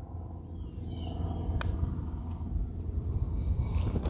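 Golf putter striking a ball once, a light click about a second and a half in, over a steady low outdoor rumble.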